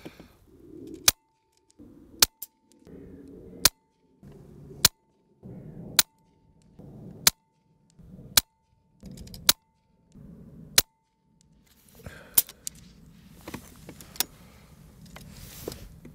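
A Daystate Red Wolf PCP air rifle firing slugs: about ten sharp cracks, roughly one a second, in a quick run of shots.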